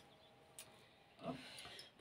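Near silence in a pause in the conversation, with one faint click about half a second in and a short, faint murmur of a voice a little after a second.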